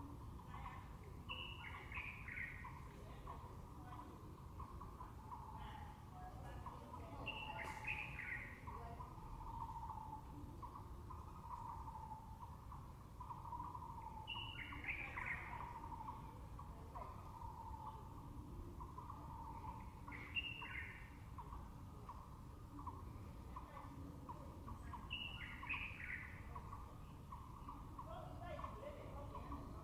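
A bird calling five times, roughly every six seconds, each call a short falling phrase, over a steady low background rumble.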